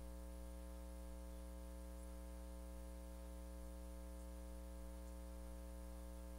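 Steady electrical hum: a low drone with a stack of fixed higher tones above it, unchanging throughout.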